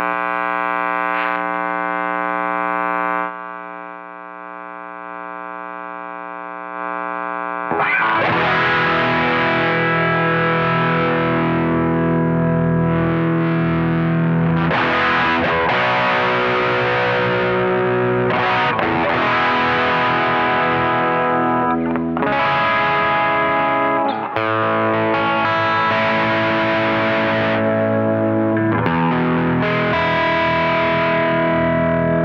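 Electric guitar, a Fender Telecaster Deluxe, played through an LY Rock Pedals dual-overdrive pedal, a clone of the DemonFX DualGun/Duellist, giving a distorted tone. A held chord rings out and fades over the first few seconds. From about eight seconds in come overdriven chords and riffs.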